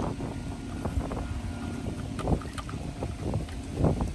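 Wind buffeting the microphone, a steady low rumble, with a couple of soft knocks about two and four seconds in.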